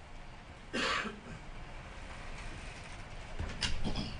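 A person coughing once, short and sharp, about a second in, followed by quieter room shuffling and a brief knock near the end.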